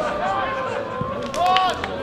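Shouted calls from players and spectators at a football match over a low crowd murmur: a few short, high calls, the loudest about one and a half seconds in.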